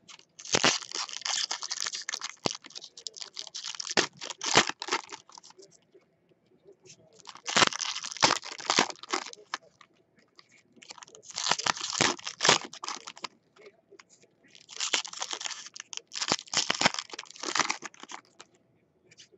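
Foil wrappers of 2010 Bowman Chrome retail baseball card packs being torn open and crinkled by hand. The crinkling comes in four bouts of a couple of seconds each, with short quiet gaps between.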